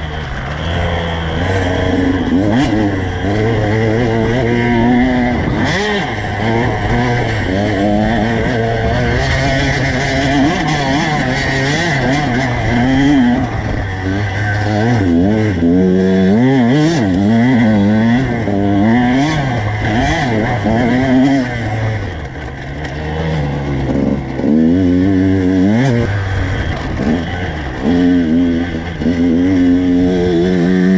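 Two-stroke dirt bike engine heard from the rider's position, revving up and falling back over and over as the throttle is worked along the track.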